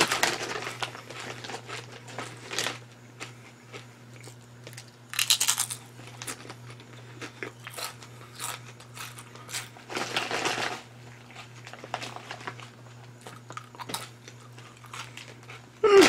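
Mouth chewing crunchy kettle-cooked potato chips: a run of crisp crunches, with louder bursts near the start and about five and ten seconds in.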